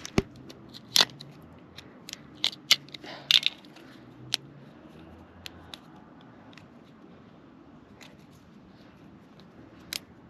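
Sharp, irregular clicks and snaps of tabs being cut and broken off Eibach rear camber shims with a Stanley knife, thickest in the first few seconds and then dying away.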